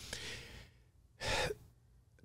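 A man's short intake of breath close to the microphone, about a second in, in an otherwise near-silent pause.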